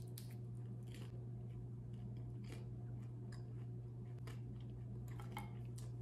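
A person chewing a crispy oven-baked taquito, the tortilla shell giving faint crunches every second or so. A steady low hum runs underneath.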